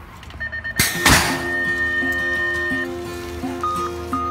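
A metal BMX start gate drops and slams flat onto the ramp with one loud thunk about a second in, over background music.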